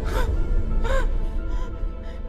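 A woman gasping and straining while a climbing axe's shaft is pressed against her throat: two short choked gasps about a second apart, then a fainter one. Underneath, a dark film score with a deep rumble slowly fades.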